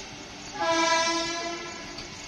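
Vande Bharat electric trainset sounding its horn: one blast of about a second, starting about half a second in, over the steady rumble of the coaches running past.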